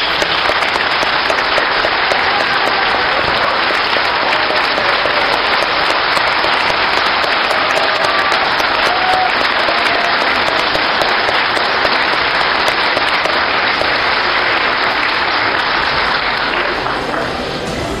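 A large audience applauding steadily for about seventeen seconds, dying away near the end.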